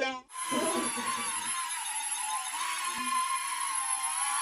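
Air Hogs Millennium Falcon toy quadcopter in flight, its four small electric rotors whining steadily, the pitch wavering slightly as the throttle changes.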